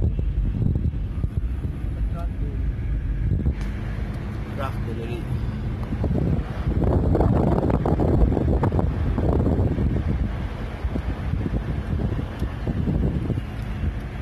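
Road and engine noise heard from inside a moving car: a steady low rumble that swells louder for a few seconds in the middle.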